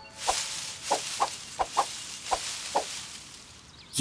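Cartoon sound effect for a fox creeping: about seven short, pitched blips at irregular intervals over a hissing rustle that fades away in the first two seconds.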